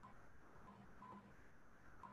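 Near silence, with a few faint, brief blips.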